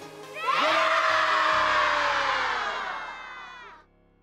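A large group of schoolchildren shouting a cheer together, breaking out about half a second in and trailing off over about three seconds, with light background music underneath.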